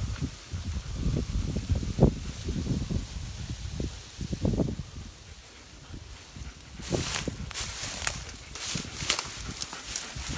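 A German shepherd pushing through dry undergrowth and fallen branches: irregular rustling and soft thuds, then a run of sharp crackling snaps of twigs from about seven seconds in.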